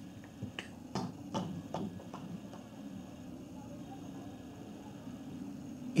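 A quick run of about seven light, sharp clicks in the first two and a half seconds, then only a faint steady low hum.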